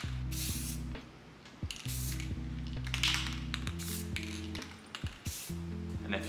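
Aerosol spray paint can hissing in several short bursts, over background music.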